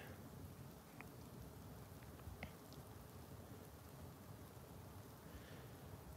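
Near silence: faint outdoor background hiss with a few faint ticks.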